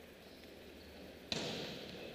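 A single sharp smack of a volleyball impact a little over a second in, with the echo of a large arena ringing on after it.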